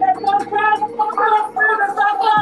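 A person's voice from the live stream, talking in quick, wavering syllables without pause, over a steady low hum.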